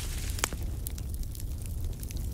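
Campfire crackling sound effect: scattered snaps and pops over a low rumble, with one sharper snap about half a second in.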